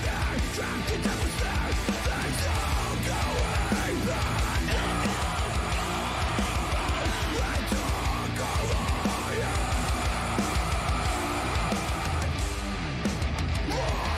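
Metalcore song: heavy distorted electric guitars and drums, with screamed vocals.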